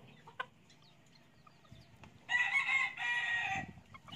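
A rooster crows once, a call of about a second and a half starting a little past two seconds in. Before it there are only a few faint clicks.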